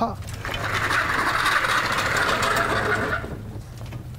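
A mobile whiteboard being wheeled across the floor, its casters rolling with a steady noise for about three seconds.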